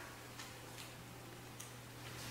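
A quiet stage with a steady low electrical hum and a few faint clicks, as a French horn is set down on a chair.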